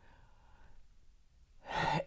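A woman breathing into a clip-on microphone during a pause: a faint breath out, then a louder, audible in-breath near the end.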